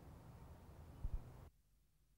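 Faint room tone with a single soft, low thump about a second in, then the sound cuts out abruptly to dead silence at an edit.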